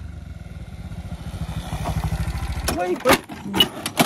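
Bajaj Pulsar NS125 single-cylinder motorcycle engine running with a rapid steady beat, growing louder, then cutting off abruptly near the end. It is followed by two loud crashes with sharp clacks and scrapes as the bike goes down on the road in a failed stoppie, with shouts over them.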